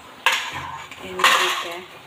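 Steel plate clattering against metal cookware at the stove: a sharp knock about a quarter second in, then a louder rattling scrape about a second in.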